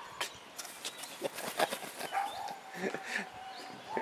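Several short, sharp animal calls with clicks between them, and a thin steady call held for under two seconds near the end.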